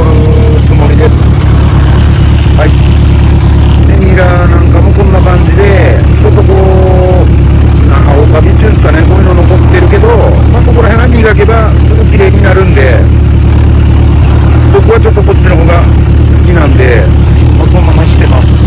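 Honda CB750K4's air-cooled inline-four engine idling steadily and loudly.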